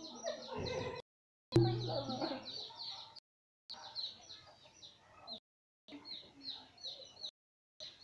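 Chickens clucking in quick repeated calls, the sound cutting out in short gaps every second or so, with a brief low steady tone about a second and a half in.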